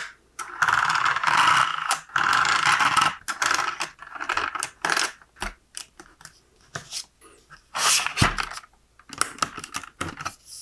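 LEGO brick domino stacks sliding along a plastic rail into a clear LEGO cartridge: plastic-on-plastic scraping and rapid clicking and clattering, with a heavier knock near eight seconds.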